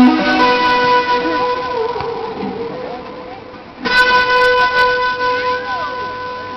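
Electric guitar played solo. A long sustained note rings and slowly fades, then a new note is struck about four seconds in and held.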